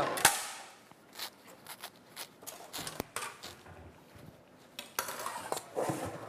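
Kitchen clatter: a sharp knock just after the start, then scattered light clicks and clinks of a cutting board, dishes and utensils being handled on the counter.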